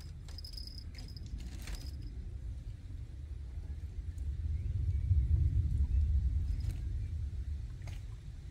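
A low, deep rumble that swells to its loudest about halfway through and then fades again, with a few faint clicks near the start.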